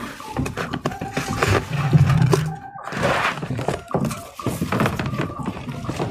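Rustling and knocking as a life-size cardboard cutout is hauled through a foil tinsel curtain, with a thunk among the handling noise.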